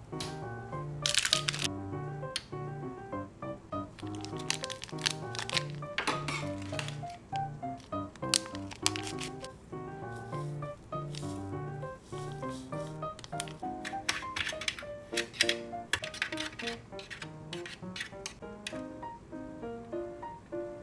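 Crinkling and crackling of foil candy-powder sachets being handled and opened, in short irregular bursts, over background music with a light melody.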